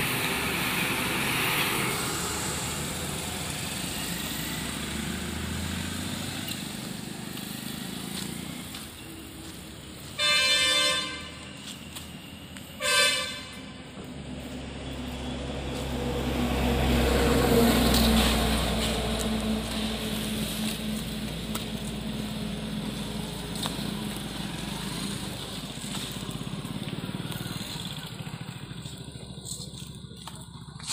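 A vehicle horn sounds twice, a blast of about a second and then a shorter one, over steady roadside traffic noise. A few seconds later a vehicle passes, its rumble growing louder and then fading.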